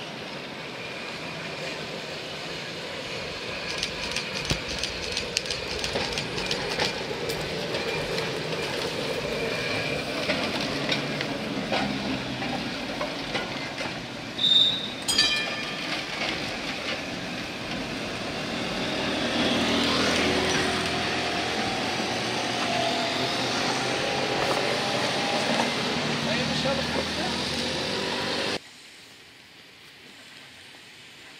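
Vintage electric tram with its trailer car rolling past on the track, wheels clicking over rail joints, running noise swelling as it passes. A brief high-pitched ring with a few sharp strikes comes about halfway through.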